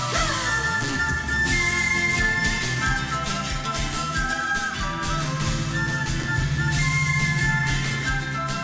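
Andean folk band playing live: acoustic guitars and a charango strummed together over a bass line and a steady beat.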